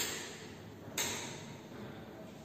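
Two sharp metallic clinks about a second apart, each ringing briefly: metal bangles on a wrist knocking as the hand turns a bench power supply's voltage knobs.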